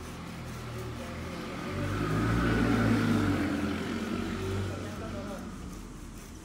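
A road vehicle passing by: its sound swells to a peak a couple of seconds in, then fades away.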